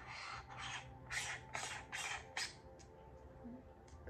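Macro lens being fitted onto the front of a small digital camera by hand: several short scraping strokes over the first two and a half seconds.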